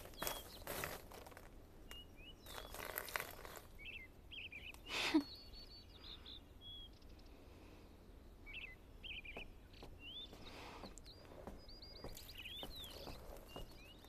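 Faint courtyard ambience with birds chirping, short calls scattered throughout and a quick trill near the end. In the first few seconds there are two soft splashy bursts as water is poured from a ceramic pot onto potted flowers, and a short sharp sound about five seconds in.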